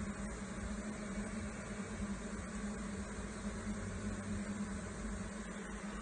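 A mass of honeybees buzzing around a comb frame freshly set into a new hive, a steady hum on one low droning pitch.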